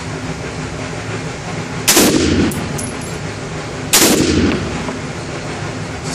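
AR-15 rifle in 5.56 NATO fired twice, about two seconds apart, each shot followed by the echo of an indoor range.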